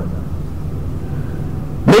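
Steady low background hum with nothing else over it; a man's voice starts again near the end.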